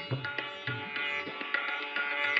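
Sitar playing Raga Bhairavi with tabla accompaniment: plucked melody notes ring on with a shimmer of sympathetic strings, over low tabla strokes that bend in pitch.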